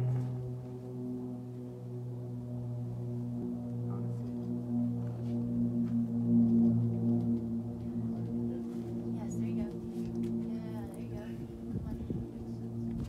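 A steady low droning tone with overtones, held without a break, swelling slightly in the middle.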